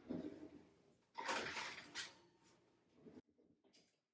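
An oven door being handled and a metal baking sheet of cookies pulled out over the oven rack: a few clatters and scrapes, the loudest a little over a second in.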